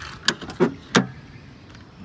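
Front door of a 1996 Toyota RAV4 being opened: three sharp clicks and knocks of the handle and latch within about a second.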